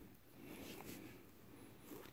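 Near silence, with a faint, brief rustle of a hand and wrist shifting on a cloth bedsheet.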